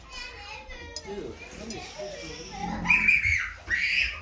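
Background chatter of several voices, children's among them, with a loud, high-pitched child's voice near the end.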